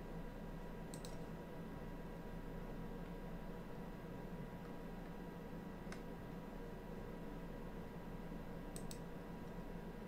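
A few faint, sharp clicks of a computer mouse over a steady low hum: one about a second in, one around six seconds, and a quick double click near the end.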